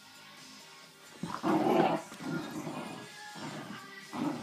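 Dogs barking and yipping in rough play, starting loudly about a second in and coming in bursts, over steady background music.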